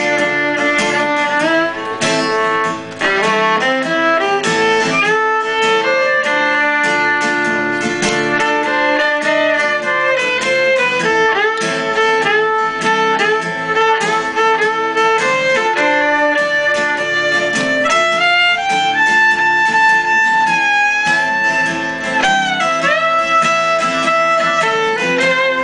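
Fiddle playing an instrumental break of held notes that slide from one pitch to the next, over steadily strummed acoustic guitar.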